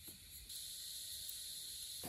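Steady high-pitched insect chorus, which steps up in level about a quarter of the way in.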